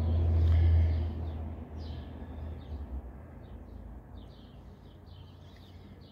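A low rumble fades out over the first couple of seconds, then faint birds chirp now and then in the background.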